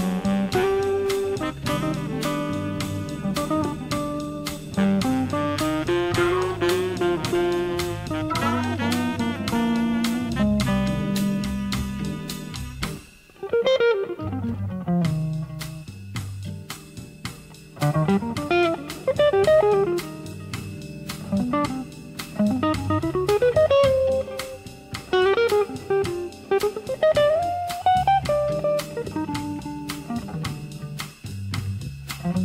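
1960s organ-guitar jazz combo recording: Hammond organ chords with drum kit and guitar, then a brief lull about thirteen seconds in. After the lull an electric jazz guitar plays a winding single-note melody over organ and drums.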